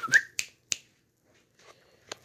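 Fingers snapping, three sharp snaps in under a second with the first the loudest, to call a dog's attention.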